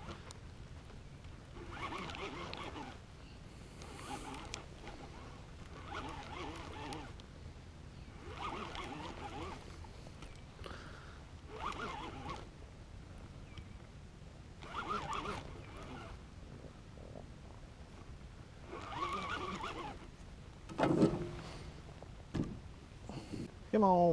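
Baitcasting reel being cranked in short bursts of about a second while bringing in a hooked fish, with a louder knock near the end.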